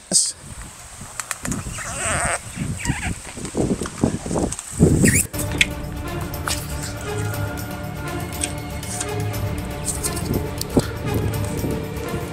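Scraping and tearing as an RV's trim channel is pulled away from its cut sealant, in uneven strokes for about five seconds. Then steady background music with sustained tones takes over.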